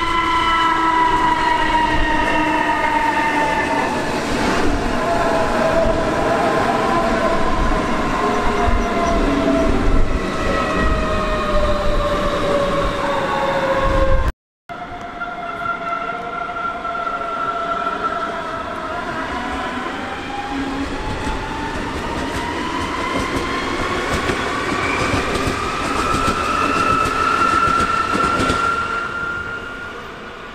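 Class 423 S-Bahn electric multiple units' traction motors whining in several tones at once. First the whine falls steadily as one unit slows down. After a sudden cut about halfway, the whine rises steadily as a unit accelerates.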